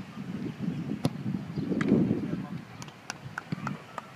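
Indistinct voices murmuring in the background, with one sharp knock about a second in as a football is kicked. A few short high-pitched sounds come through near the middle.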